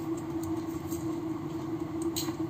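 Steady low background hum with one constant tone, with a faint click a little way in.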